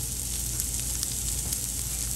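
Minced onions sizzling in melted butter in a hot frying pan: a steady hiss with faint small crackles.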